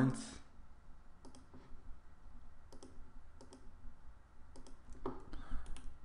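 Computer mouse button clicking several times, mostly in quick pairs, as lines are picked for trimming.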